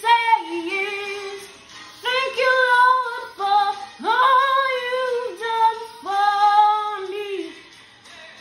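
A girl singing solo, several sung phrases with long held notes and short breaks between them.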